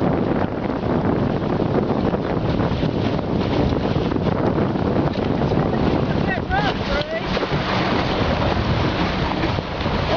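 Wind buffeting the microphone and water rushing along the hulls of a small beach-cruising catamaran sailing upwind, as a steady loud noise. A brief pitched sound cuts through about six and a half seconds in.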